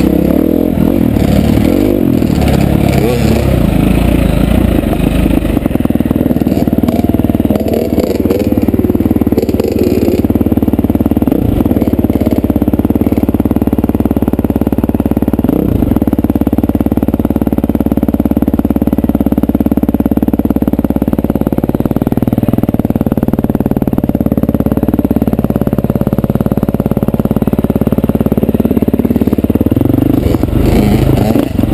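Dirt bike engine running under throttle on a rough trail, loud and continuous, its pitch moving up and down in the first ten seconds or so and then holding fairly steady.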